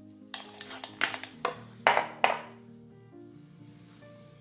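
A spatula knocking and scraping against a glass bowl as thick whipped cream is stirred: about five sharp clinks in the first two and a half seconds, then they stop. Background music plays throughout.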